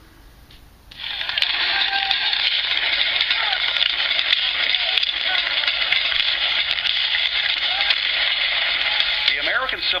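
The soundtrack of an exhibit kiosk's Civil War video starting about a second in through its small speaker: a loud, steady, hissy rush of battle noise, with a narrator's voice beginning near the end.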